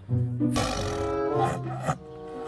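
Background music with a tiger's raspy roar laid over it, coming in about half a second in and cutting off abruptly near the end.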